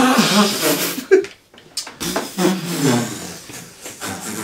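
A man blowing his nose hard into a tissue: a loud, honking blast at the start and a shorter one about a second later, followed by voices.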